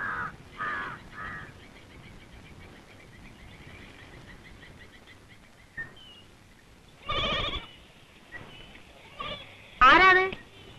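A goat bleats once, loud and wavering, about seven seconds in, and again just before the end. Birds chirp faintly and rapidly in between, and a few short vocal calls come in the first second or so.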